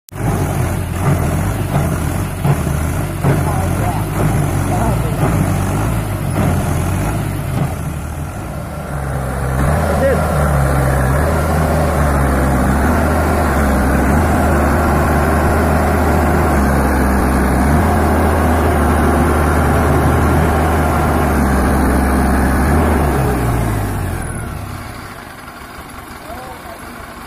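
Mahindra tractor's diesel engine running hard under load while hauling a loaded trolley through soft, rutted soil. The engine rises about a third of the way in, holds a steady note, then drops back to a lower idle near the end.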